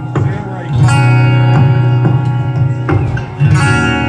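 Acoustic guitar strummed in slow chords, a few strokes about a second apart with each chord ringing on between them, played live through a concert PA.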